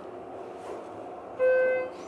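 Schindler 330A hydraulic elevator's electronic chime sounding once, a steady half-second beep about a second and a half in, over the faint steady hum of the moving cab.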